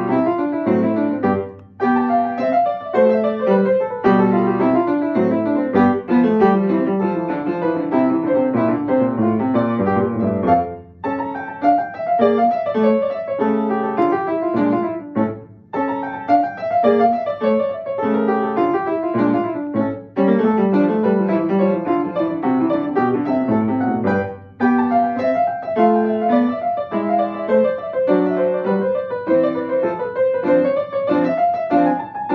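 Yamaha upright piano played solo: a study in quick, even runs of notes, with a few brief breaks between phrases.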